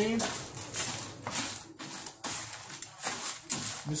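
Wooden spoon stirring raw pumpkin seeds, sunflower seeds and chopped nuts across an aluminium baking pan on a gas burner: a dry rustling scrape repeated about three to four strokes a second. The seeds and nuts are being dry-toasted without oil and are kept moving so they don't burn.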